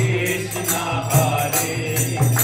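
Bhajan kirtan: a group chanting a devotional mantra over a harmonium, with a mridanga (khol) drum beating about twice a second and small hand cymbals jingling.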